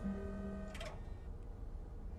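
Film soundtrack: held low notes of the musical score over a steady low rumble, with a short click about three-quarters of a second in.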